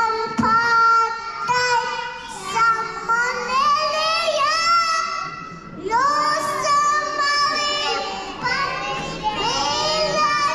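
Children's voices singing a song in held, gliding melodic notes.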